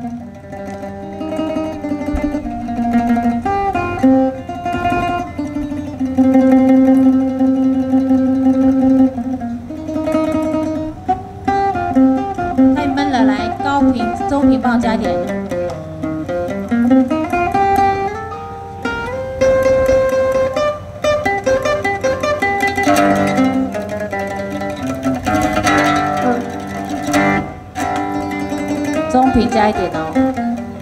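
A Chinese plucked-string instrument played solo for a soundcheck: a melody with held notes, and runs of notes sweeping down and back up through the middle.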